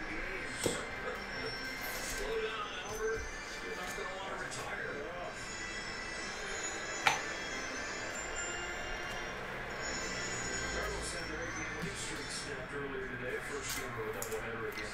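Faint background music and low voices under light handling of trading cards, with a soft click just under a second in and one sharp click about seven seconds in.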